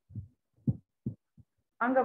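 A man's voice over a call: a few brief, low vocal sounds in a pause between phrases, then his speech resuming near the end.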